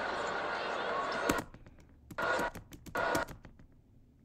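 Televised basketball game audio with arena crowd noise, cut off about a second in with a click as the playback is paused. After that come a few light computer clicks and two brief bursts of the game sound.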